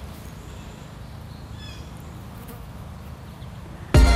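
A flying insect buzzing low and steadily, with two faint short falling bird chirps, one near the start and one a little before the middle.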